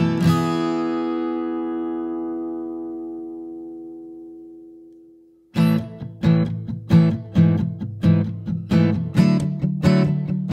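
Acoustic guitar: a strummed chord rings out and slowly fades away over about five seconds. Rhythmic strumming then starts again about five and a half seconds in, at roughly two strokes a second.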